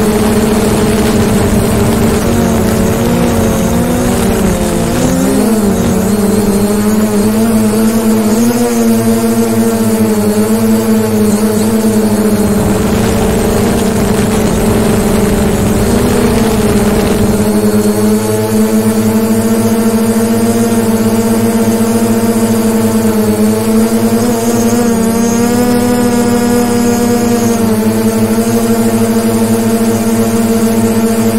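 DJI Mavic Pro quadcopter's propellers whining loudly and steadily close to the microphone, the pitch wavering now and then as the drone manoeuvres and descends.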